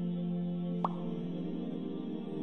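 Soft ambient background music with sustained tones, and about a second in a single short rising pop: a subscribe-button click sound effect.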